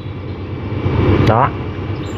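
A low background rumble of a motor vehicle, growing louder over the first second, with a click and a single short spoken word a little after one second in.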